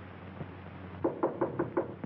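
A quick run of five sharp knocks, about six a second, starting about a second in, over the steady hiss and hum of an old film soundtrack.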